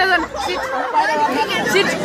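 Several voices talking over one another in a chatter.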